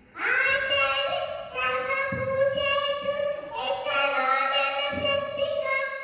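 A young boy chanting a shloka into a microphone in a sing-song melody, in three long held phrases.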